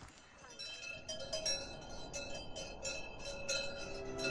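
Bells on a walking herd of cattle clanking irregularly, a few ringing strikes a second.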